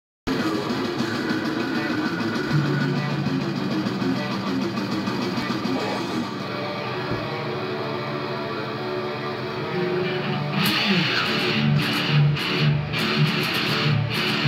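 Distorted electric guitar playing a death metal riff: long held low notes at first, then from about ten seconds in a choppy stop-start rhythm of short hard strikes.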